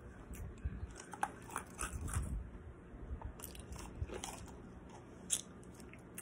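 Ice being crunched and chewed in the mouth close to the microphone, in a few bursts of sharp cracks, thinning out to a single crack near the end.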